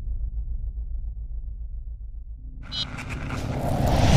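Cinematic logo sound effect: a steady deep rumble, joined about two and a half seconds in by a hum and a rising hiss that swell and get louder toward the end.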